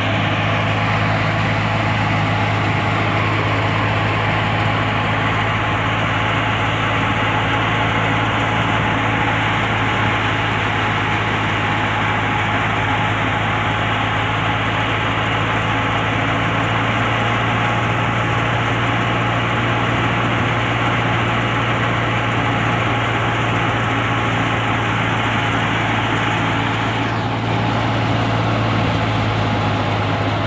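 Tractor-driven wheat thresher running steadily while straw is fed in: a loud, even machine drone with a strong low hum, the tractor engine and the thresher's drum and blower together.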